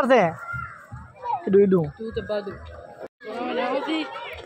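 People and children talking and calling out, with a brief drop to silence about three seconds in.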